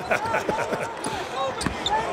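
A basketball being dribbled on a hardwood court, several bounces in a row, under the commentators' talk and chuckling.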